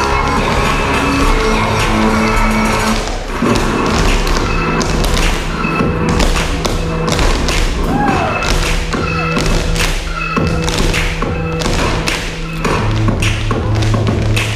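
Irish dancers' shoes tapping and thudding on the floor over recorded music, the foot strikes coming thick and fast from about three seconds in.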